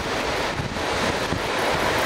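Wind buffeting the microphone, with irregular low rumbles, over a steady wash of ocean surf.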